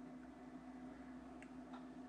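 Near silence: room tone with a faint steady hum and two faint ticks about a second and a half in.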